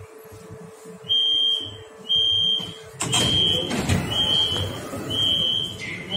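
Metro door warning beeps, a high tone sounding about once a second, while the train's doors and the platform screen doors slide open about halfway through. A steady hum stops as the doors open.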